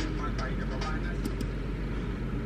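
Steady low background hum and faint hiss with no speech, broken by a couple of faint short clicks about a second and a quarter in.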